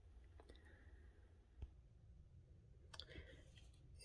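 Near silence: faint room tone with a few scattered soft clicks, the loudest about a second and a half in.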